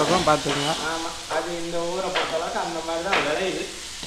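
Chopped vegetables sizzling in a hot wok as a metal spoon stirs them, with a few sharp scrapes of the spoon against the pan. A person's voice goes on over the frying.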